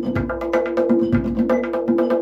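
Tombak (Persian goblet drum) played solo with the fingers: a rapid run of sharp ringing strokes, about eight a second, with deep bass strokes from the centre of the head falling in between.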